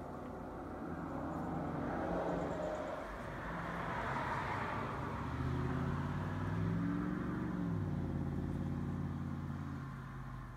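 A motor vehicle driving past, its engine sound swelling and then fading away, with a drop in pitch about eight seconds in.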